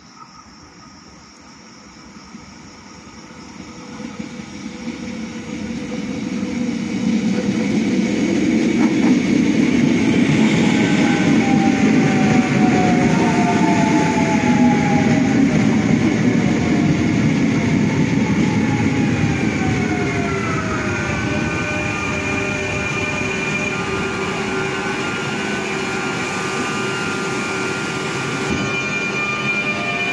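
Electric multiple-unit passenger train approaching and running in alongside the platform, its rumble swelling over the first several seconds. Falling whines as it slows then give way to a steady whine and hum while it stands at the platform.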